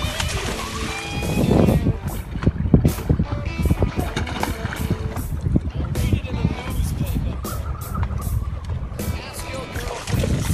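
Background music over water splashing, as a hooked golden dorado thrashes at the surface beside the boat, with irregular sharp splashes and knocks.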